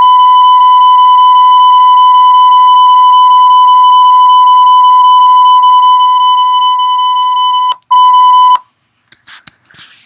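A loud, steady, high-pitched TV test-tone beep, the kind used as a censor bleep, played from a YouTube video. It holds one unchanging pitch for nearly eight seconds, breaks off for an instant, sounds briefly again, then cuts off.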